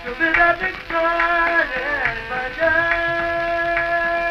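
Male Hindustani classical vocalist singing raag Tilak Kamod on an old archival recording: the voice glides through ornamented phrases, then settles into a long held note at nearly three seconds in. The recording has a narrow, dull top end.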